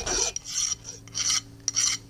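Flat hand file scraping across a small metal part held in the fingers: four short strokes about half a second apart.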